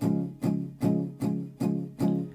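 Acoustic guitar, capoed at the first fret, strummed on a C chord in steady, even downstrokes, about five strums in two seconds.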